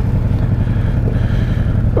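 Cruiser motorcycle's V-twin engine running steadily at low revs, a regular low rumble heard from on the bike.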